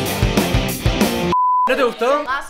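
Loud edited-in music with drum hits that stops abruptly, then a single short, steady, high-pitched censor bleep lasting about a third of a second, after which a man's voice starts.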